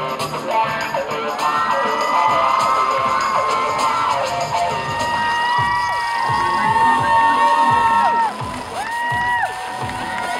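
Audience cheering and screaming: many long high-pitched screams held and overlapping, several sliding down in pitch as they end, while the runway music dies away in the first second.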